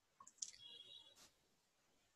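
Faint clicks from a phone's touchscreen as a chat message is sent, followed about half a second in by a brief high tone: the phone's message-sent sound.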